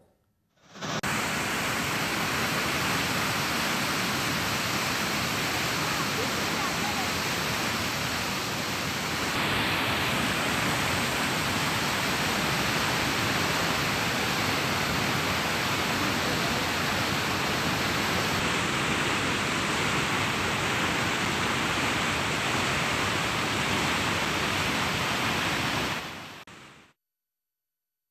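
Steady rush of floodwater pouring over a full lake's overflow weir and out of a sluice gate. It grows slightly louder and brighter about nine seconds in, then fades out shortly before the end.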